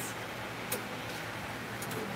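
A single sharp click about two-thirds of a second in and two faint ticks near the end, over a steady low hum.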